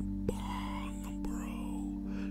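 Soft background music with steady sustained notes, under faint whispered speech.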